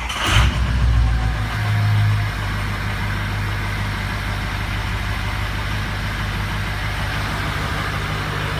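Ford 6.0L Power Stroke V8 diesel on a cold start: it fires about half a second in and runs higher for about two seconds, then settles to a steady idle. It starts and runs normally, so the intermittent fuel pump circuit fault does not show.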